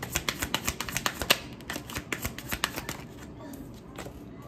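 A deck of tarot cards being shuffled by hand, a fast run of dense clicking card flicks that thins out and stops about three seconds in.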